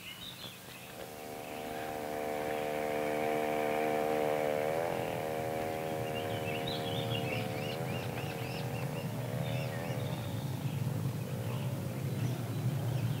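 Small outboard motor on a rowboat running out on the lake. It fades in about a second in and grows louder, then its pitch dips and rises a few times. Birds chirp over it in the second half.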